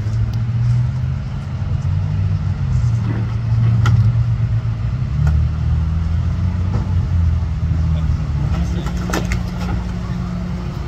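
A tow truck's engine running steadily close by, its low hum stepping up and down in pitch a few times, with a couple of sharp clicks about four and nine seconds in.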